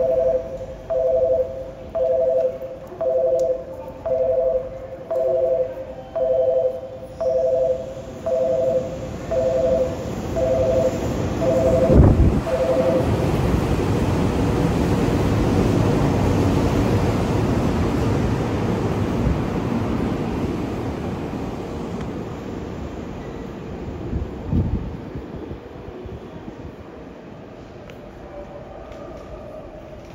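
A two-tone station platform warning chime beeps about once a second for the first twelve seconds, announcing a train that will not stop. Then a Tokyu 9000 series electric train runs through the platform at speed without stopping. Its rumble starts with a sharp knock, swells, and fades away over about twelve seconds.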